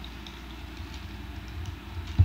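Faint clicks and rubbing of a plastic Transformers Combiner Wars Streetwise figure's parts being folded by hand, over a steady low hum.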